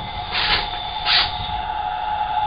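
Two short scraping rasps about half a second apart as a corroded metal cover nut on an early Delta single-handle shower valve is spun off its threads by hand, after heat, penetrant and tapping had freed it, over a steady hum.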